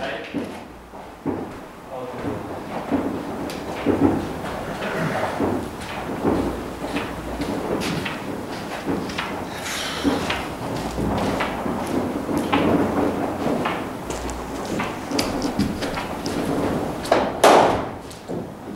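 Background chatter and scattered knocks echoing around a large indoor cricket net hall. Near the end comes one loud crack as the cricket bat strikes the ball.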